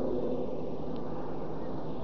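Steady low background noise of an old sermon recording in a pause between phrases, with the echo of the preacher's last words fading out at the start.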